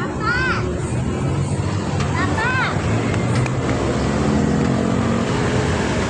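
Busy street ambience: steady traffic noise mixed with people's voices. Two short high-pitched chirps, each rising then falling, come just after the start and again about two seconds in.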